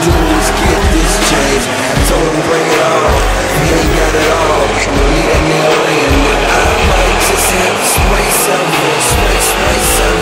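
Hip-hop backing track with a heavy bass beat, mixed over two cars revving and accelerating hard off a drag-strip start line.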